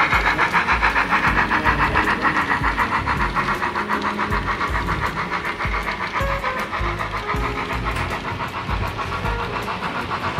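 Sound-equipped model BR 86 steam tank locomotive chuffing in a quick, even rhythm of about five to six beats a second, slowly growing fainter as the train moves off.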